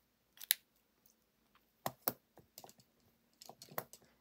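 A few small clicks and taps, the sharpest about half a second in: a plastic gel pen being capped and laid down among the other pens on the cutting mat.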